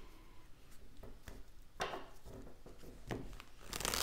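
A deck of tarot cards handled against a wooden table: a few soft taps and rubs, then a quick rush of card shuffling starting near the end.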